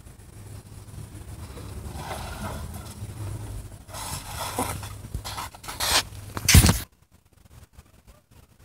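A child's balance bike rolling down a gangway and across a concrete pontoon deck: a low rumble from the wheels that grows louder as it comes near, loudest as it passes close by about six and a half seconds in, then cuts off suddenly.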